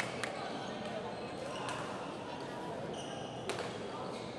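Badminton rally in a large hall: a few sharp racket hits on the shuttlecock, one near the start, one in the middle and one near the end. A brief shoe squeak on the court floor comes about three seconds in, over a murmur of voices.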